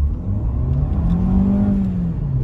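VW Golf 1.4 TSI turbocharged four-cylinder petrol engine accelerating in sport mode, heard from inside the cabin. Its note rises steadily and levels off near the end; sport mode holds the engine higher in the rev range between gears.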